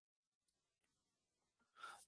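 Near silence, with a short, faint breath drawn near the end.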